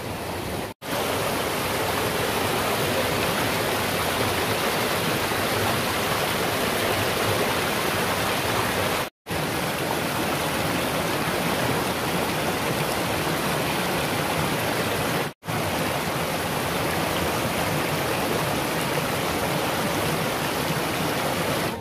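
Rushing water of a small rocky mountain stream cascading over boulders: a steady, even rush, cut off briefly three times.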